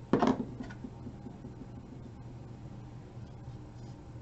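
A short knock about a tenth of a second in, as a small plastic liquid-glue bottle is set down on a tabletop, then quiet room tone with a faint low hum.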